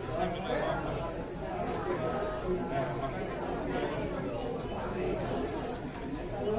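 Crowd chatter: many people talking at once in overlapping conversations.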